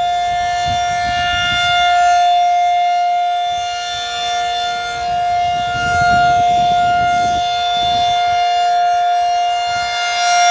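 Federal Signal 2001 DC electromechanical outdoor warning siren sounding a steady held wail during a siren test. It is super loud, swelling and fading every few seconds as the siren head rotates.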